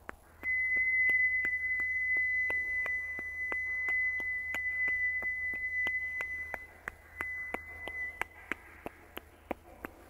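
A high, steady pure tone starts about half a second in and is held for roughly eight seconds, breaking briefly near the seven-second mark before fading. Underneath, a regular ticking runs at about three clicks a second.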